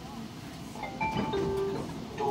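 A short electronic chime of a few clear tones, each lower than the last, about a second in, over the low steady hum of a light-rail train standing at a station.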